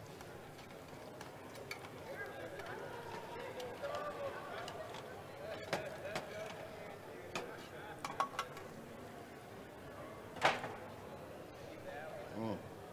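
Faint background chatter of people talking, with a few scattered clicks and one sharper knock near the end.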